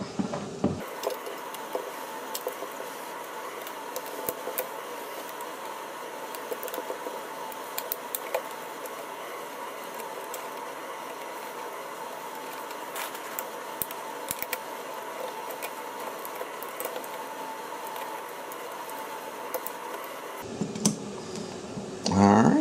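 Screwdriver loosening the terminal screws on an old thermostat's base plate to free the wires: irregular small clicks and metal scrapes over a steady hiss.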